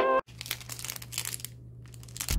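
Plastic snack-bar wrapper crinkling as it is handled, in short irregular rustles with a brief pause late on, over a low steady hum. Music cuts off abruptly at the very start.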